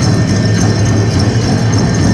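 Powwow drum music played loud and without a break, with the jingling of the fancy dancers' ankle bells.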